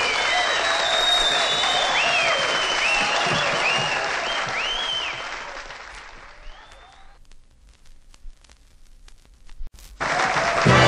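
Audience applauding at the end of a song in a live nightclub recording. The clapping fades out over a couple of seconds about halfway through, leaving only a few scattered claps.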